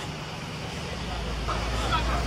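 Distant shouts of footballers calling to each other across the pitch, over a general outdoor noise, with a low rumble building from about a second in.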